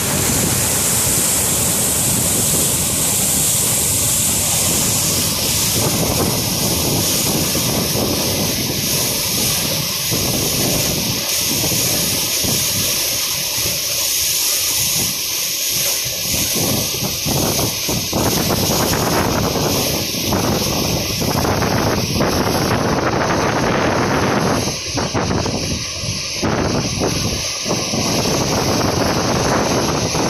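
Whitewater rapids on the Yellowstone River rushing over rocks above a waterfall: a loud, steady rush of water.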